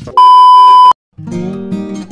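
A loud, steady test-tone beep of a TV colour-bars transition effect, lasting under a second and cutting off abruptly. After a brief silence, background music with strummed acoustic guitar begins.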